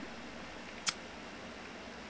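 Quiet room tone with a single short, sharp click a little before one second in.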